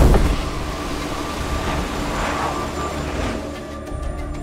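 A deep whooshing swell that peaks at the start, then a steady rushing of wind that fades out near the end. This is film sound design under a sustained music score.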